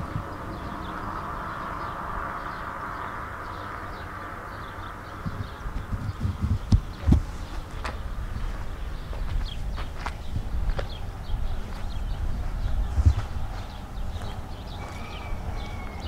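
Outdoor ambience with wind rumbling on the microphone and, from about five seconds in, irregular footsteps and small knocks as the camera is carried.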